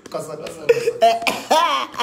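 A man's voice in short, loud vocal bursts and exclamations.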